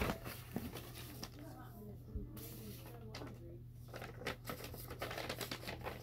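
Sheets of paper rustling and shuffling as they are handled and sorted, with small irregular crinkles and taps, right after a sharp knock at the very start.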